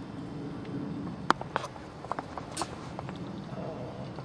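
Knife slitting open a cabezon's belly on a stone cutting board: a few sharp clicks and snaps, the loudest about a second in, over a low steady background.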